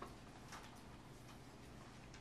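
Near silence: room tone with a few faint clicks, one at the very start and another about half a second in.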